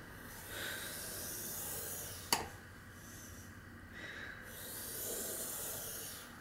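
Faint scraping of a scoring stylus drawn along paper in a scoring board's groove, in two long strokes with a single sharp click between them.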